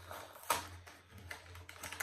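A small cardboard sweet packet and its wrapping being pulled open by hand: a run of sharp clicks and crackles, the loudest a snap about half a second in.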